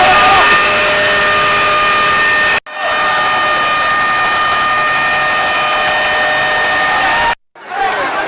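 Live sound from a building fire being fought: a loud, steady rushing noise with a held machine-like whine through it and crowd voices mixed in. It breaks off abruptly twice, about two and a half seconds in and near the end, where the footage is cut.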